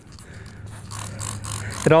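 Trigger spray bottle squirting tire cleaner onto a motorcycle's whitewall tire: a quick run of short hissing sprays, beginning about half a second in.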